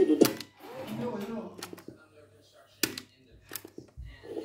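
Transport keys clicking on a Sony TCM-6DX cassette recorder: one sharp click just after the start, as the preceding sound cuts off, then faint mechanical sounds and two more clicks about three and three and a half seconds in.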